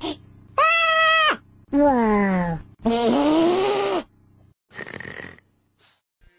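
A person's voice making three drawn-out creature calls, as if voicing the dragon puppet: a high held squeal, a moan falling in pitch, then a groan that rises and falls. A short breathy noise follows near the end.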